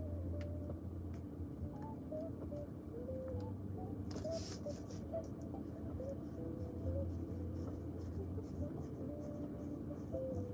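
Pen scratching on paper in short strokes as a diagram is drawn, over a steady low hum.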